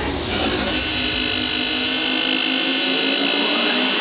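Breakdown in an electronic dance track playing over the DJ mix: the kick drum drops out, leaving a steady noisy synth wash over held low notes.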